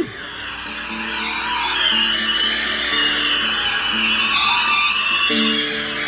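Country-rock band playing live, an instrumental passage ahead of the vocal: long, gliding high lead notes over repeated low bass notes. Strummed guitar chords come in near the end.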